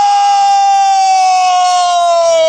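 A woman's long drawn-out shout of "Nooo", held on one high pitch that sinks slowly and then cuts off suddenly.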